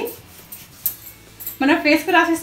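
A woman's voice speaking, broken by a pause of about a second and a half filled only by faint room sound with a single soft tick; her voice starts again near the end.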